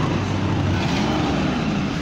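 Engine of a Toyota Hilux double-cab pickup running steadily at idle close by.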